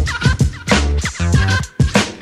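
Old-school hip hop instrumental with no rapping: a drum-machine beat and deep bass repeating, under a warbling, scratched turntable sample.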